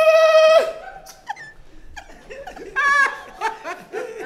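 A singer's voice holds one long, steady high note that cuts off just over half a second in, followed by scattered laughter and a short louder vocal outburst about three seconds in.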